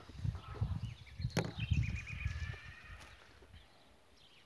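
A dried slice of bread is set down on cardboard with a single sharp tap about a second and a half in, over low rumbling noise on the microphone. Just after the tap, a bird gives a quick run of short chirps.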